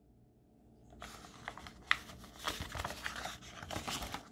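Paper pages of a picture book being turned by hand: a soft rustle and crinkle that starts about a second in, with a few light clicks and one sharper snap near the middle.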